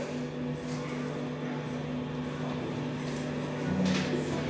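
Steady low electrical hum from the band's stage amplifiers, over faint hall noise.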